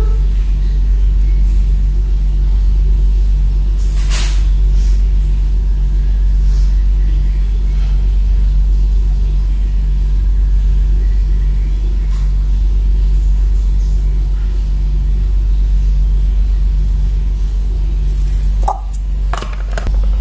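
A loud, steady low hum, with a brief knock about four seconds in and a couple more near the end.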